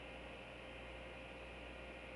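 Faint steady hiss with a low mains hum and a thin steady tone: the background noise of a webcam microphone in a room.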